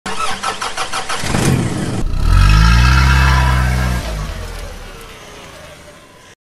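A car engine turned over by the starter with a rapid rhythmic cranking, catching about two seconds in and revving up. It holds high revs briefly, then drops back and fades away.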